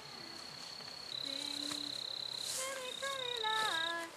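Steady high-pitched insect trill in three stretches, each a little lower in pitch than the one before. Near the end a louder pitched, voice-like note slides downward.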